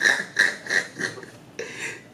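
A man laughing in a run of short, breathy bursts, about three a second, tailing off after about a second.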